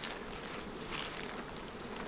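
Steady hum of an Italian honey bee colony buzzing in a freshly opened hive.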